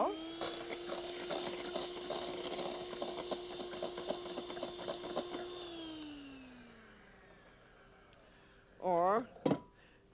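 Handheld electric beater whipping cream in a stainless steel bowl: a steady motor whine with rapid ticking. About five and a half seconds in it is switched off, and the whine falls in pitch as the motor winds down.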